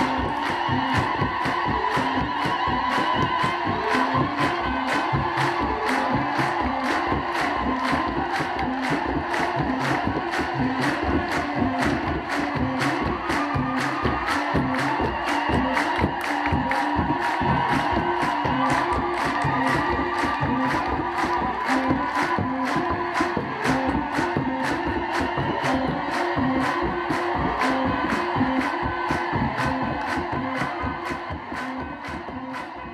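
Ethiopian Orthodox clergy and deacons singing a hymn together, with kebero drums and hand clapping keeping a steady, quick beat.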